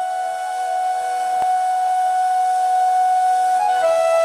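Indian flute music: one long held note that steps down to a lower note near the end, slowly growing louder.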